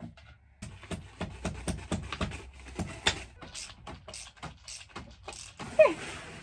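A run of irregular light clicks, knocks and clatter, as of small objects and tools being handled and set down, over a faint low hum.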